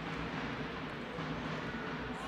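Steady, low background noise of an indoor sports hall, with a faint low hum and no distinct events.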